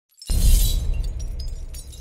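Logo-intro sound effect: a sudden crash about a quarter second in, with a deep boom and a shattering, glassy high end, fading away over the next second and a half with scattered small clicks.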